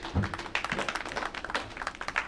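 A quick, irregular run of sharp taps or claps, like a few people clapping, with a brief murmur of voices near the start.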